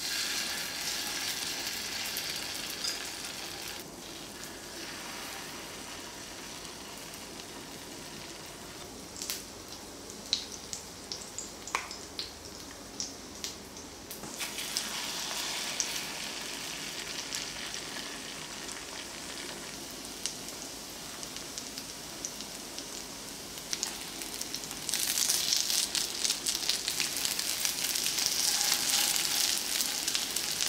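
Small squid-and-vegetable pancakes (ojingeo-jeon) sizzling in oil in a ceramic-coated frying pan, with a metal spoon clicking against the pan as batter is spooned in, mostly in the middle. The sizzle gets louder near the end.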